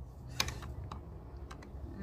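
A few sharp, light clicks and taps, the loudest about half a second in, over a low steady hum.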